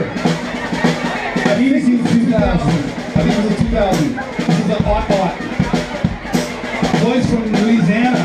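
Live rock band playing: drum kit with kick drum and cymbals, electric guitar and a man singing.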